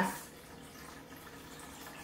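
Water pouring in a thin, steady stream from a plastic measuring jug into a stainless steel cooking pot, faint and even throughout.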